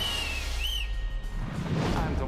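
Two whistle blasts over background music with a steady bass: the first held for most of a second and falling slightly, the second short. A whoosh follows near the end.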